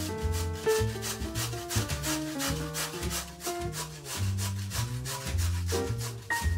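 Peeled raw potato grated on a stainless steel box grater: rapid, evenly repeated rasping strokes against the metal blades, over background music.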